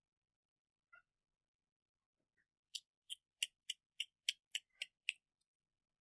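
A run of about nine short, sharp key presses, three or four a second, starting a little before halfway through, after a single faint click about a second in.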